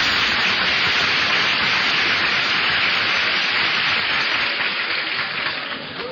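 Studio audience applauding after a song, a dense even patter of clapping that dies away over the last second or so. It comes from an old band-limited broadcast recording.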